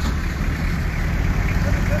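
Steady low background rumble of vehicles on the road, with faint voices in the background.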